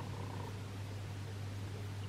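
Quiet room tone with a low, steady hum.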